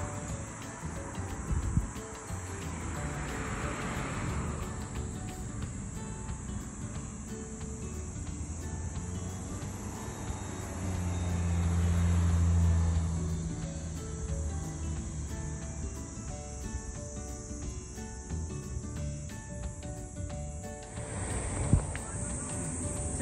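Steady high-pitched insect chorus over faint background music. A low hum swells and fades around the middle.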